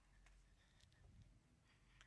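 Near silence: room tone with a faint low hum and a few faint clicks.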